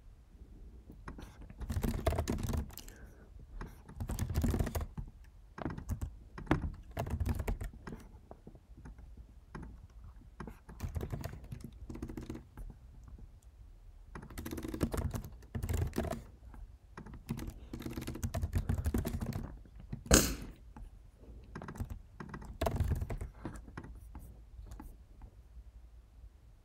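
Typing on a computer keyboard in irregular bursts of quick keystrokes with short pauses between, as code is written, and one sharper, louder key click about twenty seconds in.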